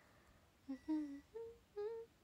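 A young woman humming short, wordless 'uu' sounds: four brief pitched hums starting a little under a second in, the last one rising in pitch.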